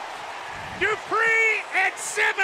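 A man's excited play-by-play shouting in three short, high-pitched calls, starting a little under a second in.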